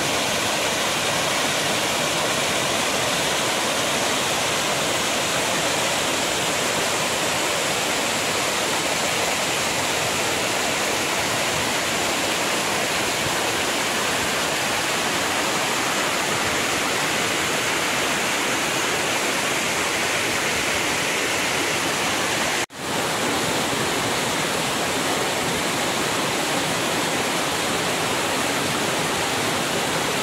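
Small waterfall pouring over mossy boulders into a shallow rocky pool: a loud, steady rush of falling and splashing water. It cuts out for an instant about three-quarters of the way through, then resumes unchanged.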